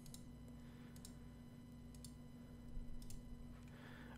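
A few faint computer mouse clicks, roughly a second apart, as code sections are collapsed in the editor, over a low steady hum.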